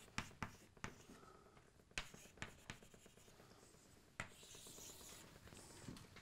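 Chalk writing on a blackboard, faint: a series of short sharp taps and strokes, then a longer drawn stroke from about four to five seconds in.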